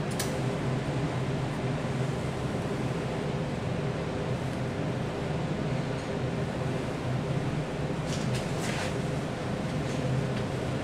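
Steady low mechanical hum of room air-handling, like a ventilation fan. A few faint light clicks sound about eight to nine seconds in.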